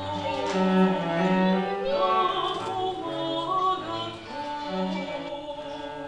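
A soprano voice singing long held notes over a bowed cello accompaniment, growing softer near the end.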